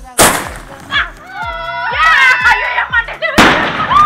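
Aerial firework shots going off: a loud bang just after the start, a smaller one about a second in, and another loud bang about three and a half seconds in, with music playing along.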